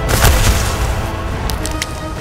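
Film fight sound effect: a heavy crash about a quarter second in, with a few short sharp cracks near the end, over a dramatic background music score.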